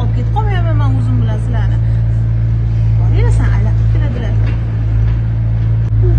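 People's voices, wavering and gliding in pitch but without clear words, over a loud, steady low drone.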